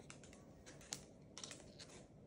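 Faint scattered clicks and taps from a Moluccan cockatoo's claws on a stone countertop as it clambers onto a large plush toy, the loudest about a second in.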